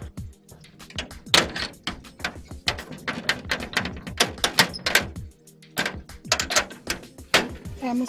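Repeated, irregular knocking and banging on a metal wrought-iron gate, over background music.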